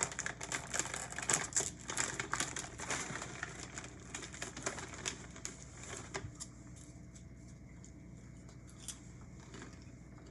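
Plastic snack bag of SkinnyPop mini popcorn cakes crinkling as hands reach in to take cakes out. The crackle is dense for about the first six seconds, then dies down to a few scattered clicks.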